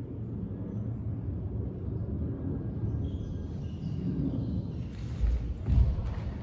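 Bare feet thumping twice on a wooden gym floor near the end, the second stamp the louder, as a leg is raised and set down in a kiba-dachi stepping move, over a steady low rumble of room noise.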